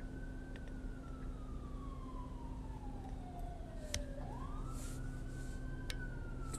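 An emergency-vehicle siren wailing faintly, its pitch falling slowly and then rising again about four seconds in. A steady low hum runs underneath.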